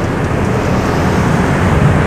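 Steady roadside traffic noise with a low engine hum.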